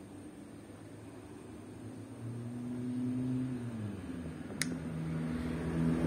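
A low motor hum that swells and then drops to a lower pitch partway through, with one sharp click near the end.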